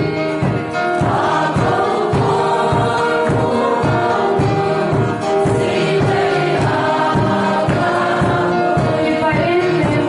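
A mixed choir of women and men singing a Christmas hymn together, with a strummed acoustic guitar keeping a steady rhythm beneath the voices.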